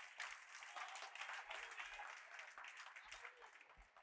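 Faint applause from a church congregation, a patter of many hands that slowly dies away over about three seconds.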